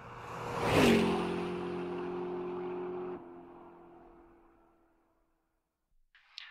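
A car passing by fast: a rising whoosh peaks about a second in and the pitch drops as it goes past. A steady tone then holds and cuts off sharply about three seconds in, and the car fades away.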